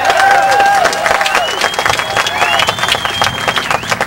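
A crowd clapping and cheering, with a long high whistle through the middle.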